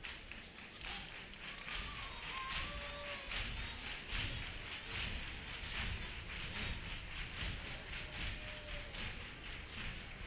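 Theatre audience applauding: a dense, uneven patter of hand claps with scattered thumps and a few short calls near the start.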